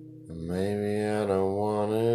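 Acoustic-guitar song: a strummed chord dies away, then about a third of a second in a man's voice comes in on a long held note that wavers gently in pitch.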